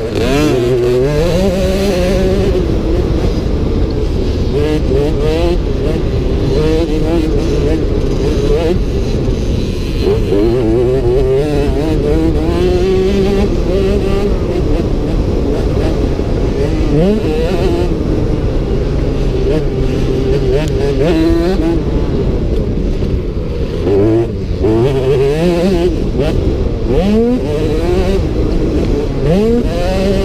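Motocross bike engine heard from on board, revving up through the gears and dropping back at each shift, over and over as it accelerates and slows along a dirt track.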